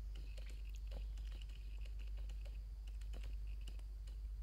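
Forest outdoor ambience: irregular light clicks and ticks, several a second, over a faint steady high-pitched hum and a constant low rumble.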